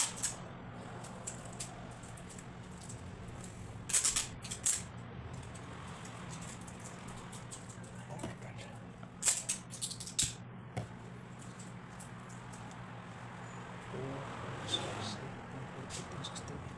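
Handling of a bunch of fresh tulips as a bouquet is worked on: a few groups of brief, crisp snaps and rustles, about four seconds in and again about nine seconds in, over a steady low hum.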